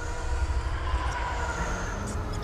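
Deep, steady industrial rumble of heavy machinery, with faint thin tones above it.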